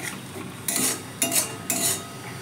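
Metal spatula scraping and stirring a thick masala paste frying in a metal wok, with three sharp scrapes in the second half over a low sizzle. This is the paste being sautéed well (koshano) in oil.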